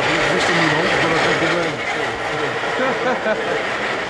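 Several people talking in the background over a steady street noise, with a laugh near the end.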